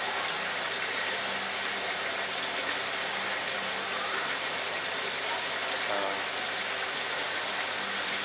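Steady, even hiss of water running in a fish spa foot tank, with a faint low hum underneath.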